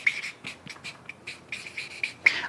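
Felt-tip marker squeaking and scratching on flip-chart paper in a quick run of short strokes as a word is written.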